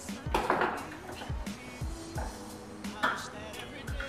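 Hand-held can opener clicking and clinking as it cuts around the lid of a can of sweetened condensed milk, over background music with a beat.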